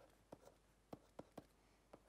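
Faint light taps of a stylus on a pen tablet as lines of a diagram are drawn: about five short ticks in two seconds over near silence.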